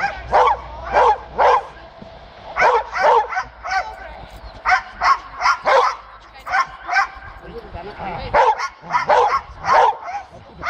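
A shepherd dog barking repeatedly in quick runs, about two barks a second, at a helper with a bite sleeve. This is drive barking during protection training.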